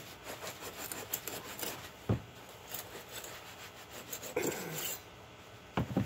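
A homemade knife cut from a band saw blade sawing through a thick rockwool block around a metal template: quick, irregular scratchy strokes, with a sharp knock about two seconds in and another near the end.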